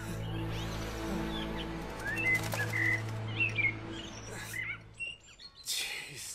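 Small birds chirping and twittering over a sustained low music chord, the music fading out about five seconds in; a short burst of noise near the end.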